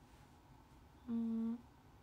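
A woman's short closed-mouth hum, one steady note lasting about half a second, a little past a second in, over faint room tone.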